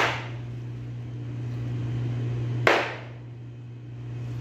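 A meat cleaver chopping through raw chicken onto a plastic cutting board: two sharp chops, one at the start and one about two and a half seconds later, over a steady low hum.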